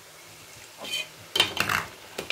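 Chin chin dough pieces deep-frying in hot oil in a stainless steel pot, a faint steady sizzle. From about a second in, a metal slotted spoon stirs them, scraping and clattering against the pot.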